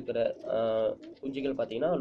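A domestic pigeon coos once, briefly, about half a second in, over a man's talking.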